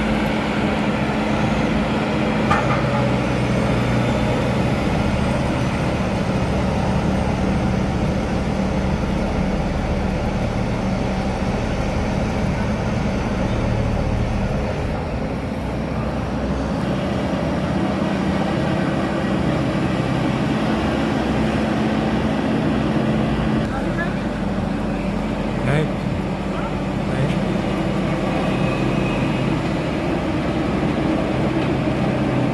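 Diesel engines of a tandem road roller and an asphalt paver running steadily while the roller works back and forth over fresh asphalt, a constant low drone with a brief dip in level about halfway through.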